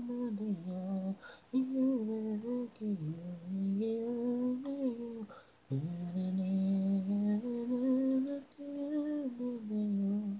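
A solo female voice sings unaccompanied, an isolated a cappella vocal track. Held, gliding notes come in phrases, broken by short pauses with audible breaths at about one second and five seconds in.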